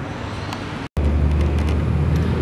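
Steady outdoor background noise that cuts out for an instant just before a second in, then returns louder with a steady low rumble.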